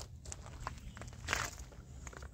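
Faint footsteps on gravelly dirt and grass: a few soft crunches and scuffs, with one slightly louder rustle a little past the middle.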